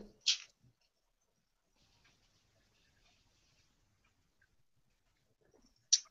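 Near silence on the call audio, broken by one brief, sharp hissy sound just after the start and a very faint hiss a couple of seconds in.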